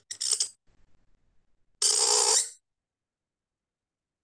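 Reed qalam scratching across paper in two strokes: a short one near the start, and a longer steady one about two seconds in, each cutting off sharply.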